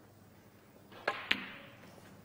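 Two sharp clicks of snooker balls about a fifth of a second apart, a little past halfway through: the cue tip striking the cue ball, then the cue ball hitting an object ball, the second click slightly louder and briefly ringing in the hall.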